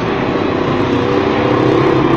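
Steady, loud background noise with no clear single event, of the kind a mechanical or road-traffic hum makes.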